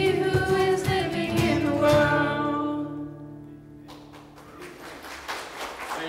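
Youth vocal group singing with acoustic guitar, ending a worship song on a held final chord that fades out about four seconds in. Then a congregation's applause starts.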